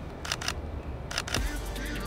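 Camera shutter firing twice, about a second apart, each release heard as a quick pair of sharp clicks.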